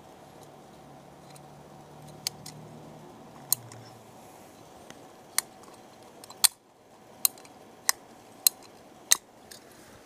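Hand-squeezed PVC pipe cutter biting through a plastic sprinkler riser, a series of sharp clicks that come more regularly in the second half, roughly every two-thirds of a second, as one riser section is cut off.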